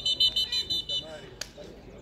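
Referee's pea whistle blown in one long, fast-trilling blast that stops about a second in, stopping play for a foul. Players' voices shout over it, and a single sharp knock follows.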